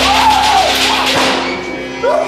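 A sudden loud horror-style sound hit, a blast with a deep rumble underneath, fading over about a second and a half. A drawn-out yell comes near the start.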